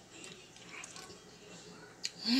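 Faint mouth sounds of someone chewing a bite of macaroni, with a few small wet clicks.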